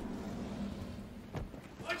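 A low steady rumble that fades out about a second and a half in, broken by a single sharp knock. A man's voice begins to shout "Watch out" at the very end.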